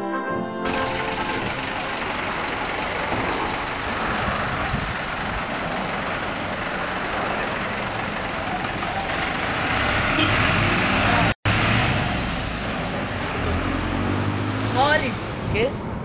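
City bus engine running steadily, a loud even rumble and hiss, broken off briefly about eleven seconds in; voices come in near the end.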